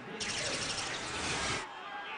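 Broadcast transition sound effect accompanying an FSN logo wipe: a sudden swoosh with gliding tones, lasting about a second and a half and cutting off sharply, over a low stadium crowd background.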